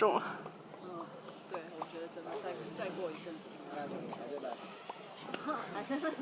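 Faint background chatter of distant voices with a steady, high-pitched insect drone, likely crickets or cicadas, running underneath.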